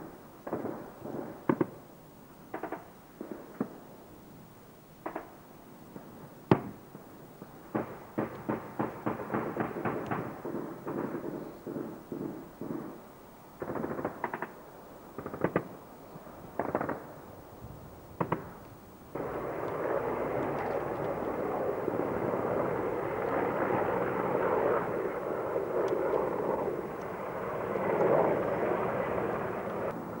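Gunfire: scattered single shots and rapid bursts of automatic fire. About two-thirds of the way in, the sound switches abruptly to the steady noise of a helicopter in flight.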